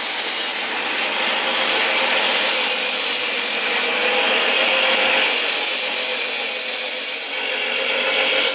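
Electric bench grinder grinding a hand-forged steel knife blade: a continuous harsh, rasping hiss of steel on the abrasive wheel that grows brighter and fades several times. This grinding is the final stage of making the knife.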